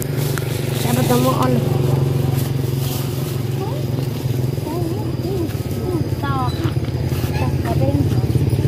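A motor idling steadily, a constant low hum, with people talking quietly over it.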